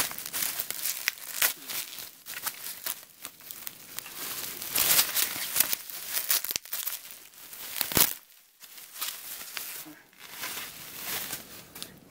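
Plastic bubble wrap being crumpled and pulled off a small toy figure, crinkling and crackling unevenly, with a sharp click about eight seconds in.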